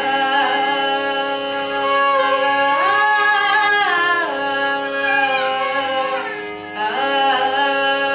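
A girl's voice singing Carnatic music in raga Vasantha with violin accompaniment, over a steady drone. She holds long notes and slides between them, with a short dip before she resumes near the end.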